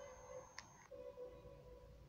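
Near silence between narrated sentences: faint steady tones and one faint tick about half a second in.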